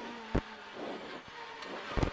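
Renault Clio R3 rally car's four-cylinder engine heard from inside the cabin, running at a fairly steady pitch between pace-note calls, with a single sharp thump about half a second in.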